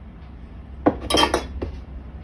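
A small ceramic spice container clinking and knocking as it is handled and set down after adding thyme: a sharp knock about a second in, a quick ringing cluster of clinks, then a lighter knock.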